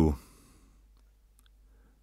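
The last syllable of an audiobook narrator's reading voice fades out, then a pause of faint room tone with one small click about one and a half seconds in.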